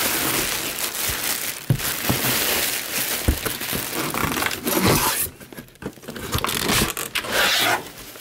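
Plastic packaging crinkling and rustling inside a cardboard shipping box as a hand digs through it, with a few light knocks. It comes in two stretches, with a short pause after about five seconds.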